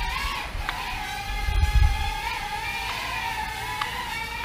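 VK330 micro foldable quadcopter's brushed motors and propellers whining in flight, a steady high whine that wavers slightly in pitch as the throttle shifts.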